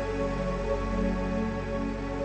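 Background music: slow, gentle new-age style music with long held tones over a sustained bass.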